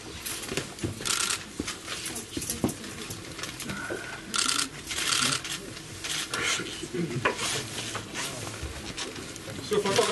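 Intermittent rustling and scraping in short bursts over faint murmured voices in a crowded room, with a man's voice starting at the very end.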